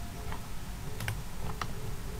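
About five sharp, scattered clicks of someone working a computer, over a low steady background hum.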